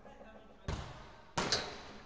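A football struck hard twice, about two-thirds of a second apart, each impact sudden and loud with a long echo trailing off in a large indoor hall.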